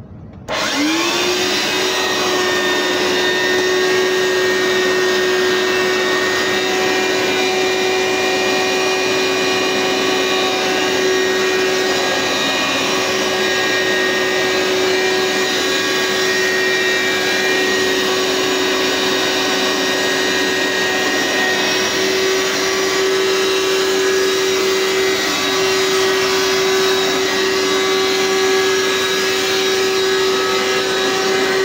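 Hoover SteamVac carpet cleaner switched on about half a second in, its motor spinning up quickly and then running with a steady hum and whine.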